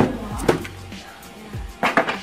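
A box set down on a wooden table with a sharp knock, a second knock about half a second later, and a quick cluster of knocks as it is handled near the end, over background music.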